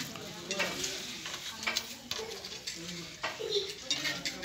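Indistinct background chatter with scattered light clicks and clatter of steel plates and tumblers at a meal.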